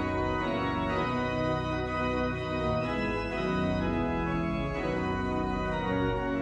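Three-manual church organ played in sustained chords, the harmony moving to a new chord every second or so.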